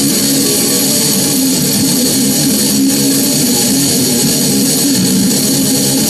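Electric guitar (a Stratocaster) played through a death metal distortion pedal, with the low E string tuned down to B: a continuous run of heavy distorted riffing with no breaks.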